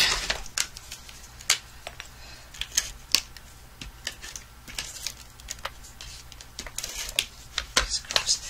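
A plastic adhesive tape runner and cardstock being handled on a desk, giving irregular sharp clicks and taps as the runner is picked up and worked along the paper.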